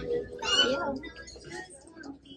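A brief high, gliding background voice about half a second in, then fainter background sound.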